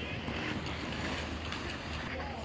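Steady outdoor background noise with a constant low rumble, with faint distant voices in it.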